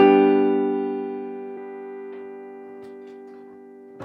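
A closing G major chord on piano, struck once and left to ring, slowly fading, with a violin holding the top G as the scale's last note.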